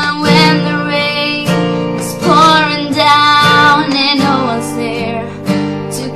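A woman singing held, wavering notes to her own strummed acoustic guitar.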